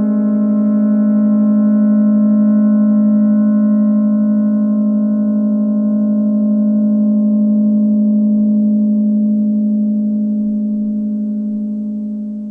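Electronic synthesizer music: a single low note with a clear stack of overtones held as a steady drone. Its higher overtones slowly thin out, and it begins to fade near the end.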